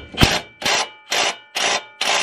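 Makita cordless impact driver in full impact mode hammering a 19mm socket on a lug nut in short trigger bursts, about four blasts half a second apart. It is drawing a new wheel stud through the hub with a stud installer tool, and these are the last few bursts to seat the stud fully.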